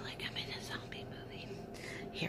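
A woman whispering a few breathy words in short broken bursts, without full voice.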